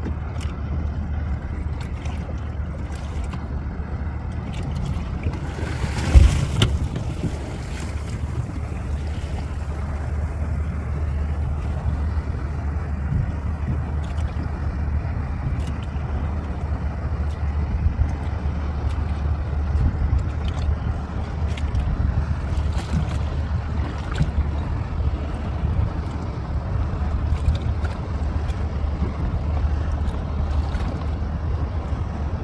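A boat's engine running with a steady low rumble, with wind and water noise on the microphone. There is a loud thump about six seconds in.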